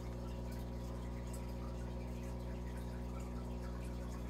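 Steady aquarium running sound: a constant low hum from the tank equipment with faint, even water bubbling.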